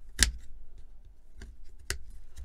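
Sharp plastic clicks as the midframe of a Xiaomi Redmi Note 10 Pro is worked apart by hand, its retaining clips snapping loose: three clicks, the loudest just after the start and another strong one near the end.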